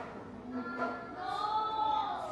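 A class of young children's voices in unison, drawn out like a chant, ending on a long held, sung-like note.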